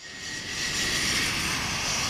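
Engines of a four-engine Airbus A340 jet airliner passing low overhead on final approach with its landing gear down: a loud jet rush that swells over the first half-second and then holds, with a thin whine early on.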